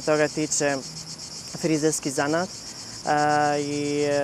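A man's voice in short, broken phrases over a steady high-pitched insect chorus.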